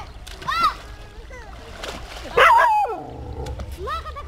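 Children splashing in a shallow canal, with one loud splash about halfway through, mixed with short high-pitched cries.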